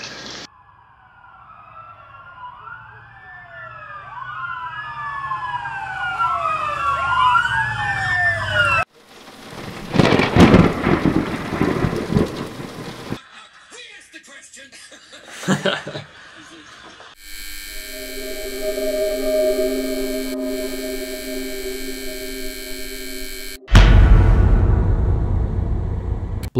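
A run of sound effects: several sirens wailing over one another, then a long rumbling thunderclap with rain. After some scattered clicks comes a steady electric buzz from a faulty lamp, and near the end a sudden loud crack of thunder with rain.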